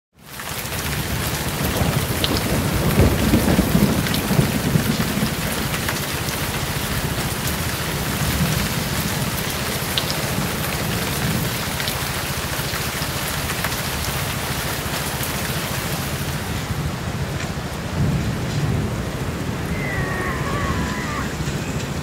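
A person splashing through muddy floodwater, under a loud, steady rushing noise that lasts throughout, with a deeper rumble that is heaviest a few seconds in.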